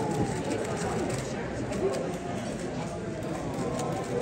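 Indistinct chatter of many people in a large room, a steady background babble with a few faint clicks.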